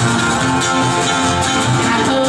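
Live bluegrass string band playing an instrumental passage without vocals: banjo, mandolin, acoustic guitar and upright bass.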